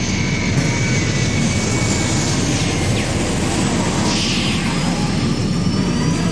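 Jet airliner in flight: a steady, loud rush of jet engine noise.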